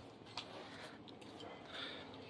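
Faint room noise with a single light click about half a second in.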